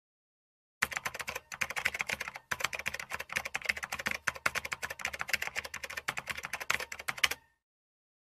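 Typing sound effect: a rapid, uneven run of key clicks that starts about a second in, breaks off briefly twice, and stops shortly before the end.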